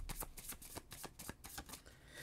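A tarot card deck being shuffled by hand: a quiet, quick run of card clicks, about seven a second.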